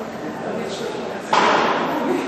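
Indistinct murmur of people's voices, cut a little over a second in by a sudden loud noise that fades away within about half a second.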